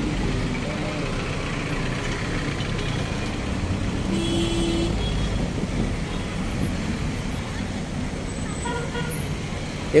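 Road traffic: cars and vans driving past, with a vehicle horn sounding once, for just under a second, about four seconds in.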